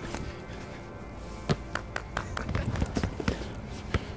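A basketball being dribbled on an outdoor court: a run of sharp, irregular bounces starting about a second and a half in, over faint background music.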